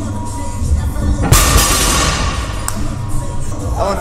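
A loaded barbell with iron plates dropped to the floor after a 655 lb deadlift: a loud metal crash about a second in that rings off over a second or so. Background music plays throughout.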